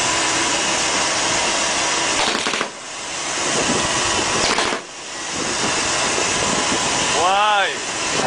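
Steady rush of wind and sea noise on a handheld microphone aboard a moving boat. It cuts out sharply twice and swells back each time. Near the end comes a brief warbling tone that rises and falls several times in quick succession.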